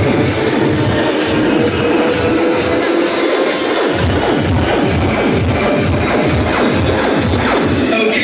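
Electronic dance music from a DJ set played loud over a club sound system, with a steady kick drum about two beats a second. The kick and bass drop out briefly about three seconds in and come back about a second later.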